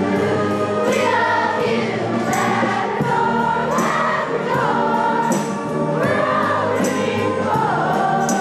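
Large children's choir singing an upbeat song over instrumental accompaniment with a steady beat.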